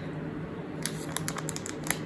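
Plastic cookie wrapper crinkling in the hands, a rapid, irregular run of small crackles starting about a second in.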